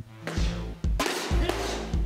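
Background music with a drum beat over a sustained bass line.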